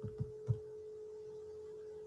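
A steady, faint electrical hum held on one pitch, with three soft low taps in the first half-second.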